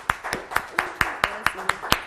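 Hands clapping in a steady rhythm, about four sharp claps a second, with a voice faint between them.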